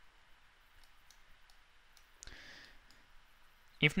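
Faint computer mouse clicks, a few scattered single clicks, with a short soft hiss about two seconds in. A man's voice starts near the end.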